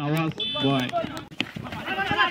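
Men's voices shouting and calling out on the field as the fielding side celebrates a wicket. A brief high steady tone sounds about half a second in.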